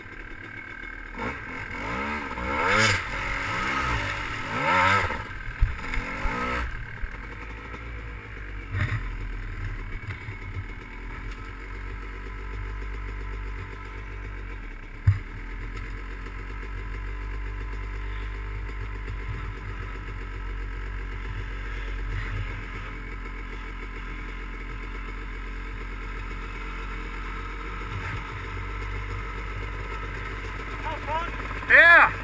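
Dirt bike engine revving up and down hard over the first several seconds of trail riding, then running steadier at lower revs, with a single sharp knock about fifteen seconds in.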